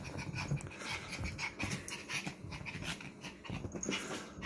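Chihuahua puppy breathing in quick, short puffs with its nose down on a crocheted blanket.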